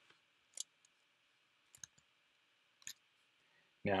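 A few sharp computer mouse clicks about a second apart, one of them a quick double click.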